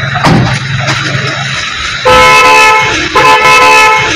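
Vehicle horn honking in two long blasts of about a second each, starting about halfway through, with a short break between them.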